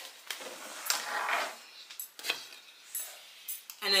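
Thin wooden frame strips being handled on a wooden tabletop: a few light wooden clicks and knocks, with a short stretch of rubbing between them.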